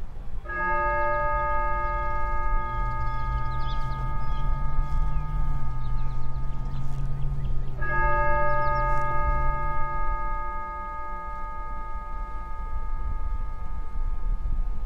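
A church bell tolling slowly: two single strikes about seven seconds apart, each ringing on for several seconds, with a low background rumble.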